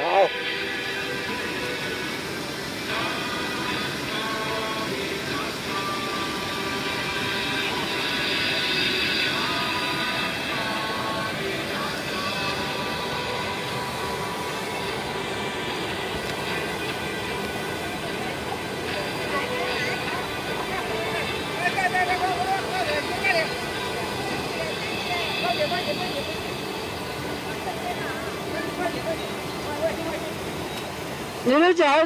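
Mountain stream rushing and splashing over boulders in a steady, continuous wash of water noise. Faint voices of people nearby sound over it at times.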